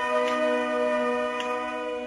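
Wind band holding one sustained chord, brass to the fore, with two faint ticks along the way; the chord starts to fade near the end.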